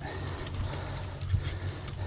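A bicycle rolling over grass: a steady low rumble and hiss from the tyres and frame, with a few faint ticks.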